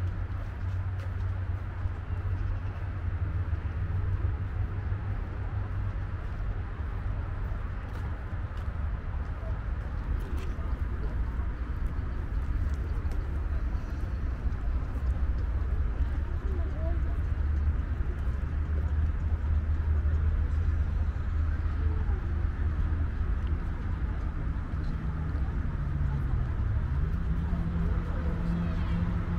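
Outdoor park ambience: a steady low rumble with faint voices of people in the distance.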